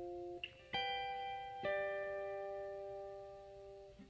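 A quiet instrumental passage of a slow ballad: plucked guitar notes, one struck about three-quarters of a second in and another about a second later, each ringing and fading slowly.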